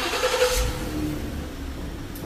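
A car engine and tyres in a concrete parking garage. The sound rises, is loudest about half a second in, then slowly fades as the car moves off.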